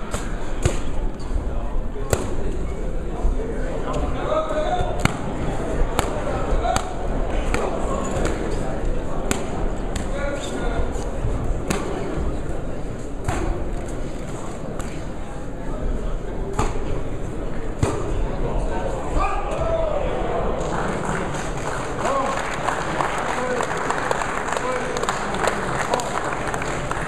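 Boxing-hall crowd murmuring and shouting, with sharp slaps and thuds of gloved punches landing at irregular intervals. The crowd noise grows fuller for the last few seconds.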